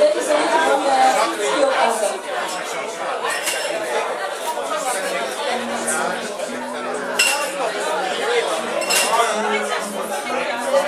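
Bar crowd chattering, many voices overlapping, with glasses clinking sharply now and then.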